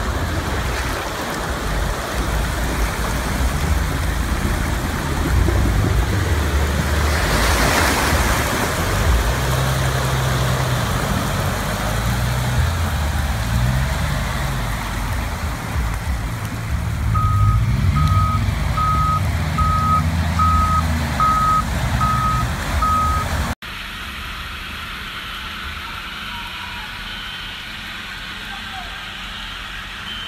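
Car engines running low as vehicles push through deep, fast-flowing floodwater, with a steady rush of water that swells about eight seconds in. Later comes a regular electronic beeping, about one and a half beeps a second, for around six seconds. The sound then cuts abruptly to a quieter, steady hiss of water.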